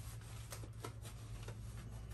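Faint rustling with a few light ticks as a wallet is pushed into the back pocket of denim jeans, over a low steady hum.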